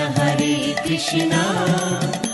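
Hindu devotional kirtan music: a chanted melody over steady held tones, with regular percussion strikes keeping the beat.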